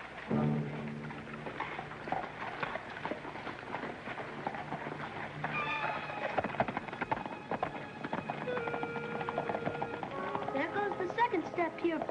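Hoofbeats of several horses being ridden off at a brisk pace, with background music sounding over and after them.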